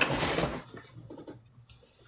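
A man's voice finishing a short phrase, then a brief fading hiss and faint scratchy rustling.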